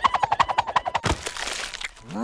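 Cartoon sound effects: a fast run of crackling clicks, followed by a single hit about a second in.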